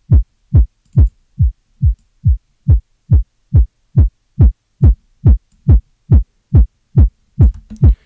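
Synthesized drum-and-bass kick drum looping, a little over two hits a second, each hit a fast downward pitch sweep into a deep low thump. It runs through a hard clipper with its gain being pushed up, which squares off the low end and adds nasty harmonics.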